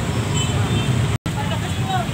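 Idling motorcycle engines and the chatter of a dense street crowd in a traffic jam. The sound cuts out for an instant just past halfway.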